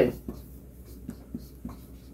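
Chalk writing on a chalkboard: a series of short, light strokes and taps.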